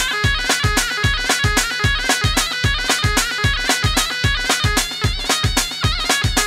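Kurdish folk dance music played live: a reedy, bagpipe-like lead melody, with ornamented wavering notes, over a steady heavy drum beat.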